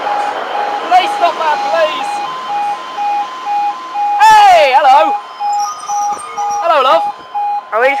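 Level-crossing warning alarm beeping steadily on and off at one pitch: the signal that the crossing is closed for a train. A loud calling voice cuts across it about four seconds in, and two shorter calls come near the end.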